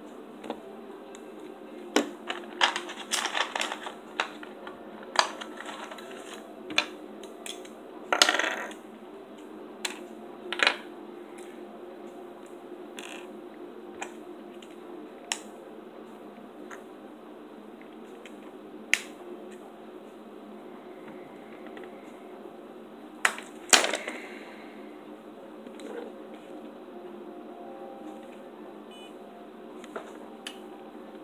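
Scattered small plastic clicks and taps from handling a blood glucose testing kit, with a quick cluster a couple of seconds in and isolated clicks after, over a steady low hum of room tone.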